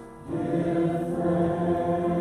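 A worship song: voices singing long held notes, backed by acoustic guitar and keyboard. The music drops away briefly at the start for a breath, and a new sung phrase comes in a moment later.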